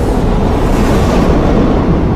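Intro sound effect for a channel logo: a loud, steady rush of noise with a deep low end, like a fiery explosion.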